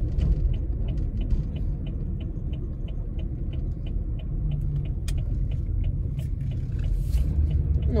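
Inside a moving car's cabin, the engine and tyres make a steady rumble. Over it, for about the first five seconds, there is a rapid, even ticking, about three ticks a second, typical of a turn-signal indicator as the car turns at an intersection.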